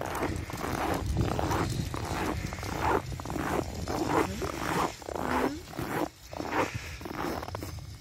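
Footsteps crunching on packed snow, about two to three steps a second, with a short pitched cry about five seconds in.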